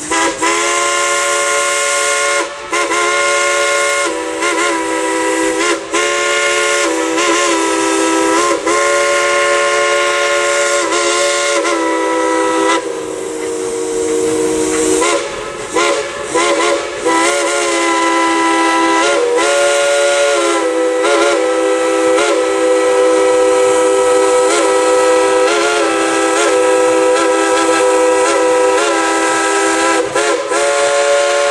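Dollywood Express narrow-gauge steam locomotive's whistle blown long and loud, a chord of several notes held for most of the time and broken off briefly a few times, over a hiss of steam.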